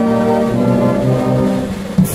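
Military brass band playing held chords on tubas, trumpets and horns. A percussion crash on the bass drum lands right at the end.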